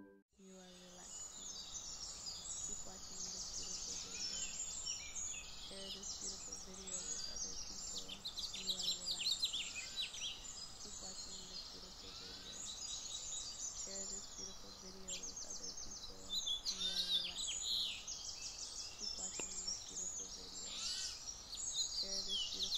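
A chorus of songbirds singing and chirping, starting about half a second in: many high, quick, overlapping calls with no break.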